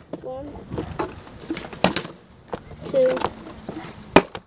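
A child's voice talking quietly in short bits, with a few sharp taps and knocks from a plastic water bottle being handled and tossed for a bottle flip.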